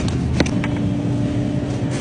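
Steady low hum and rumble of supermarket background noise, with a faint held tone starting about half a second in. A single sharp click sounds just before the tone begins.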